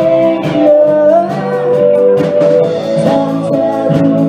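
Live band playing: electric guitar and drums, with a woman singing.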